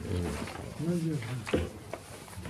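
Brief, indistinct voices at the table, with a rustle of paper sheets being turned about a second and a half in.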